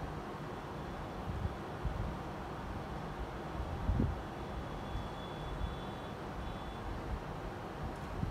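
Steady low background rumble with no speech, and a brief soft thump about four seconds in.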